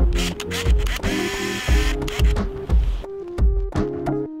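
Background music with a regular bass beat. About a second in, a brief whirr lasting under a second: an Olympus mju-II 35mm point-and-shoot's motorised film advance winding on after a shot.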